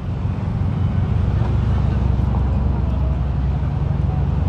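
Steady low rumble of city street traffic, with no single event standing out.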